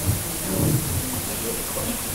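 Handheld microphone being handled and passed from one person to another: dull low thumps and rubbing over a steady background hiss.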